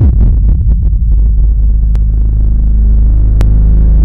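Loud, deep cinematic rumble from a trailer soundtrack. It starts suddenly and holds steady as a low drone, with two faint clicks about two and three and a half seconds in.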